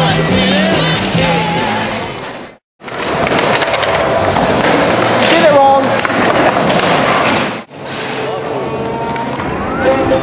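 Skateboard wheels rolling over pavement, a steady rumbling noise with sharp clacks from the board, in raw clips separated by hard cuts. A song with singing plays at the start and ends about two and a half seconds in.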